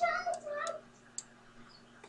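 A woman's voice trails off in a drawn-out, gliding sound in the first second. Then it goes quiet, with a few sharp computer mouse clicks, the clearest just after a second in.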